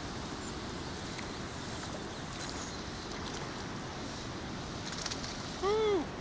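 Steady rushing outdoor noise of the river air on the microphone. Just before the end comes a short, loud call that rises and then falls in pitch.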